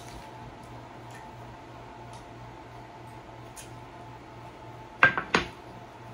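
Glass baking dish set down on a wooden table: a quick clatter of two or three sharp knocks about five seconds in, over a steady faint hum.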